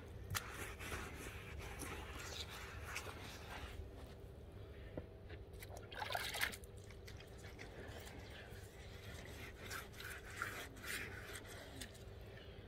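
Faint wet rubbing of a sponge over wet basalt paving slabs in short, irregular strokes, over a low steady rumble.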